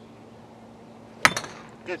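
A golf driver striking a teed golf ball: a single sharp crack a little over a second in, with a short ring after it.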